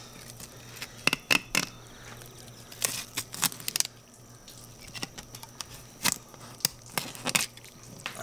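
Fillet knife slicing a bighead carp fillet off the rib cage, with scattered sharp clicks and crackles as the blade cuts over and through the bones.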